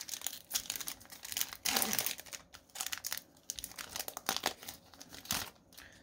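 Trading cards and their plastic packaging being handled by hand: irregular crinkling and rustling with small clicks, a little louder about two seconds in and again near the end.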